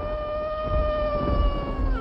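A wolf howling: one long held howl that drops in pitch near the end, over a low rumble.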